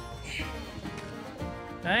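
Background music in a country style with plucked strings, playing steadily.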